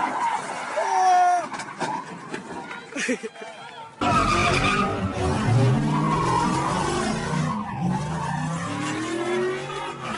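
A car sliding sideways with its tyres squealing. About four seconds in, the sound cuts to a car doing donuts: the engine revving hard under steady tyre squeal, its pitch rising near the end.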